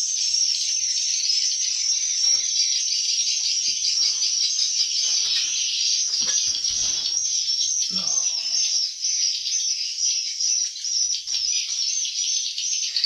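Dense, continuous high-pitched chirping and twittering of many swiftlets inside a swiftlet nesting house.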